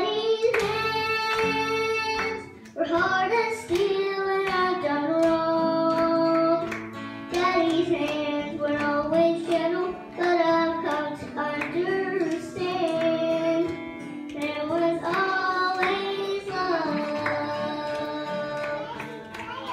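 A young girl singing a gospel song solo into a microphone in long held notes, accompanied by acoustic guitar.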